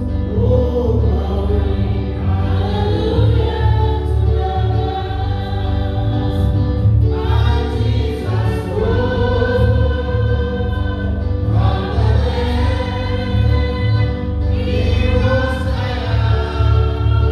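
A gospel hymn sung by many voices together, over a pulsing bass accompaniment.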